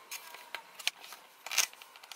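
Rigid clear plastic sandwich container crinkling and clicking in the hands as it is turned over: a few short crackles, the loudest about one and a half seconds in.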